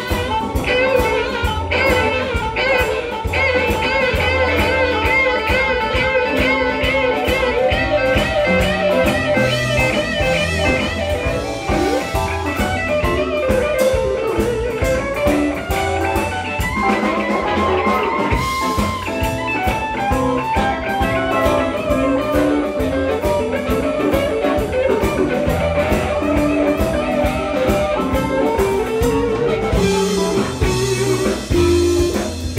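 Live blues band playing: electric guitar lead and harmonica over bass guitar and drum kit, with a steady beat.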